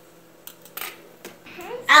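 A few light clicks and scrapes of a metal fork against a plastic plate, spaced apart, while food is served.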